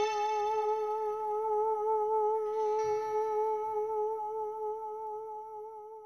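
A single long held sung note with steady vibrato, the last note of a karaoke song, slowly fading out. The backing music under it stops about halfway through.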